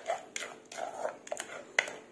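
Wooden pestle working a wet pumpkin paste in a clay mortar: irregular knocks against the mortar wall with soft wet squelches, a few a second. The loudest knock comes near the end.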